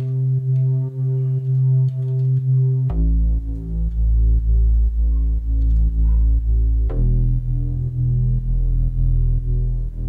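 A synth bass line played solo, holding long low notes: it steps down to a deeper note about three seconds in, then jumps back up about seven seconds in. The sound pulses evenly about twice a second.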